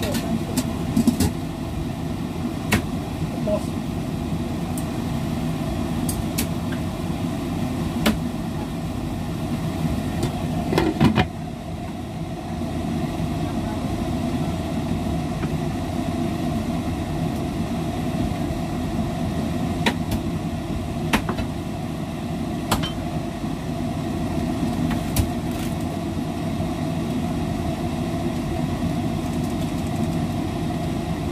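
Broccoli in oyster sauce sizzling in a wok over a steady hum, with scattered crackles. About eleven seconds in there is a clatter as a glass lid goes on the wok, and the sizzle is a little quieter after it.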